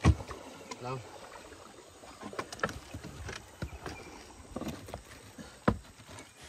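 Knocks and bumps against a wooden boat as a cast net and its catch are handled on it, with a sharp knock at the start, small scattered knocks through the middle and another strong knock near the end.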